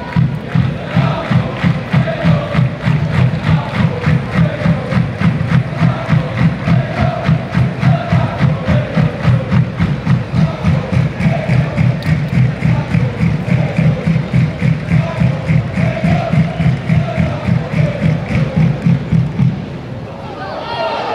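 A football supporters' end chanting in unison to a steady bass drum, about two and a half beats a second, with many voices singing a rising-and-falling chant tune over the beat.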